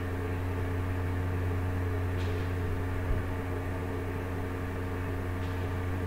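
Steady low background hum with several fixed tones above it, with one small knock about three seconds in.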